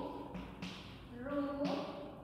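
A few short taps and scrapes of chalk on a blackboard as letters are written, with a woman's voice speaking over the later strokes.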